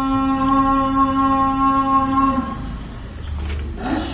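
A voice chanting, holding one long steady note that ends about two and a half seconds in; after a short quieter gap a new held note begins.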